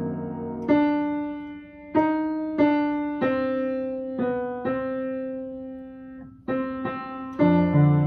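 Piano playing a slow hymn accompaniment passage without the voice: about nine struck notes and chords, each ringing and fading before the next.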